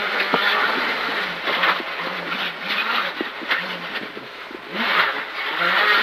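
Rally car engine heard from inside the cabin, its pitch rising and falling as the car is slowed and worked through a tight right-hand turn. The engine goes quiet briefly about four seconds in, then picks up again. Short clicks of gravel striking the car run through it.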